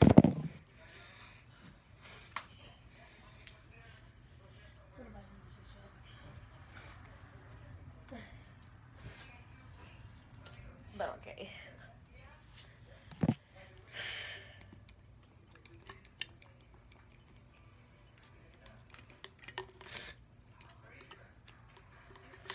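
Handling noises from a plastic bottle and a phone: a loud knock at the very start, then scattered clicks and knocks, with a short rustling hiss about fourteen seconds in, over a faint steady hum.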